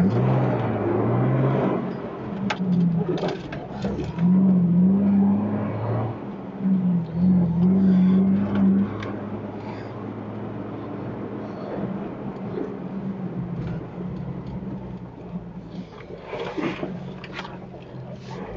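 Jeep engine running as it drives along a rough dirt track, its note rising and falling with the throttle through the first half, then steadier and quieter, with a few knocks from the track.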